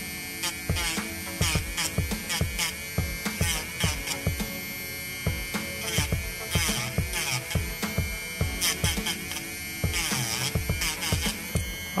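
Cordless electric nail drill with a sanding band running at a steady whine, grinding in many short, irregular touches as it files excess cured gel glue flush with a press-on nail tip.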